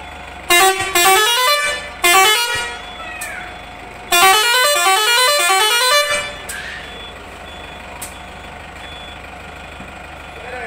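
Multi-tone musical air horn on a coach bus playing a tune of quick stepped notes that climb in pitch, sounded four times, the last run the longest at about two seconds.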